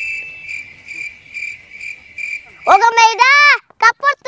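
Cricket chirping in a steady pulse, about three chirps a second; about three-quarters of the way in, a loud high voice cries out with sweeping pitch.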